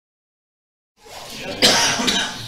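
Dead silence, then about a second in the room sound cuts in abruptly and a person coughs once, loudly, near the end.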